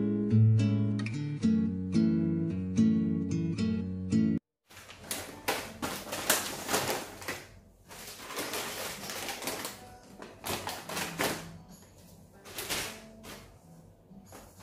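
Acoustic guitar music plays and cuts off abruptly after about four seconds. It gives way to quieter, irregular crinkling of plastic snack packets being handled and set down on a desk.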